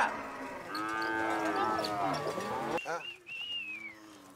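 A herd of cattle mooing: several long calls overlap for about two seconds from a second in. Then it goes quieter, with a single high call that falls in pitch near the end.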